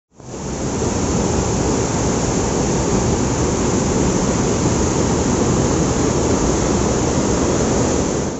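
A swollen river in flood rushing through white-water rapids: a loud, steady rush of water that fades in at the start.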